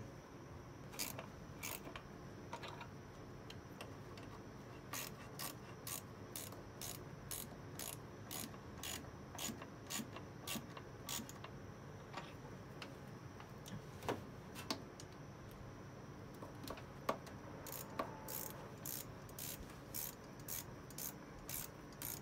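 Quarter-inch drive ratchet clicking faintly as valve cover bolts are tightened down a little at a time. The clicks come in short runs of a few per second, with pauses between.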